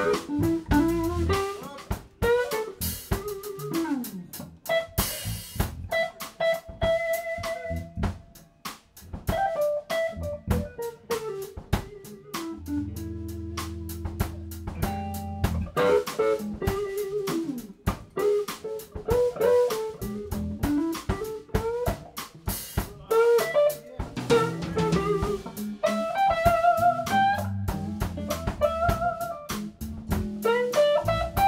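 Live band playing with electric guitars and a drum kit: a bending lead melody line over sustained low notes and steady drumming.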